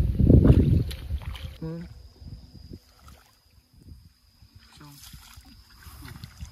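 Wind buffeting the microphone with a low rumble for the first second and a half, then dying down, with two brief voice sounds about a second and a half in and near the end.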